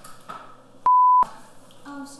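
A censor bleep: one loud, pure, steady beep about a third of a second long, about a second in, with the film's audio muted around it to hide a word.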